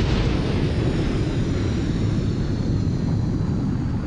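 Sound effect of a nuclear explosion: a loud, steady low rumble that fades slightly toward the end.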